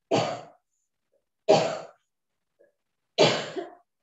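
A person coughing three times, each cough short and sharp, about a second and a half apart.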